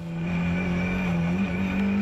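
Car engine running hard at a steady pitch, then climbing in pitch about a second and a half in as it accelerates.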